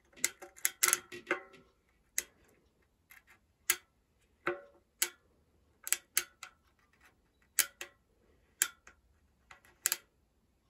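Hope RS1 rear hub's spring-loaded pawls clicking over the ratchet teeth in the hub shell as the freehub body is turned slowly back and forth by hand, with no seal or grease fitted. A quick run of clicks comes first, then single clicks and pairs about a second apart.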